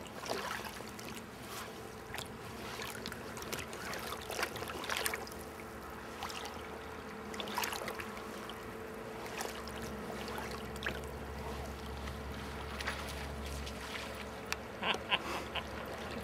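River water running and lapping around wading anglers, with many short splashes scattered through it as a hooked Atlantic salmon is played in towards a landing net. A low rumble joins for a few seconds about ten seconds in.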